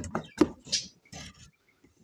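A few short taps and knocks with a brief scrape as cardboard shoe boxes are handled and shifted, fading to quiet about halfway through.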